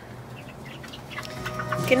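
Cornish Cross broiler chickens cheeping faintly. Steady background music fades in over the second half.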